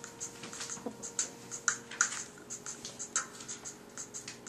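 An irregular run of light, sharp clicks and taps, several a second, over a faint steady hum.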